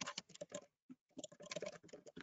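Typing on a computer keyboard, faint: two quick runs of key clicks with a short pause between them.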